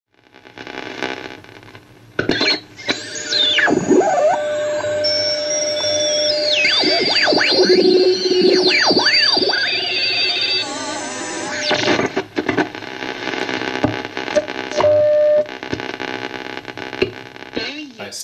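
Hammarlund HQ-100 tube shortwave receiver being tuned across a band: hiss and static with whistles sliding up and down in pitch, steady carrier tones, and snatches of station audio. The sliding whistles crowd together in the first half and thin out after that.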